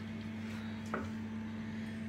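A steady low electrical hum, with a faint tap about a second in.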